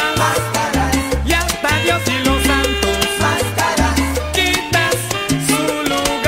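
Salsa music in an instrumental stretch: a bass line of held low notes under pitched instrument lines, with dense, steady percussion.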